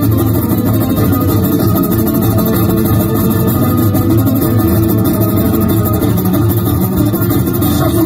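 Two amplified acoustic guitars playing together in an instrumental passage, with no singing.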